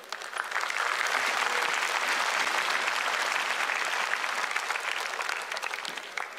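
Audience applauding, building up within the first second, holding steady, then dying away near the end.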